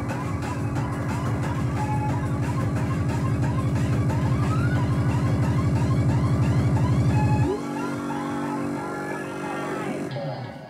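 A DJ mix playing a siren-like effect: quick rising-and-falling sweeps repeat steadily over a sustained bass chord. The bass drops out about three quarters of the way through, leaving the sweeps.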